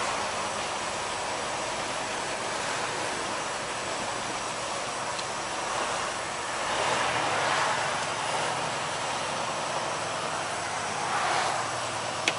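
Steady in-cab drone of a semi truck under way: engine running and tyres hissing on wet pavement, swelling briefly twice, about halfway through and near the end.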